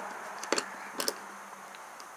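Two small clicks, a little over half a second apart, from a Beretta 92FS's recoil spring and guide rod being compressed and fitted against the barrel assembly in the slide.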